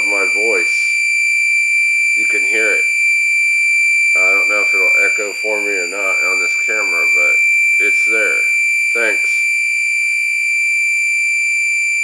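A homemade 555-timer oscillator circuit, amplified through a small speaker, puts out a steady high-pitched whine. Garbled, unintelligible voice-like sounds come through it several times, with a short gap near the start.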